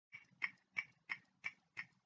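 Clock-ticking sound effect: six sharp ticks, about three a second.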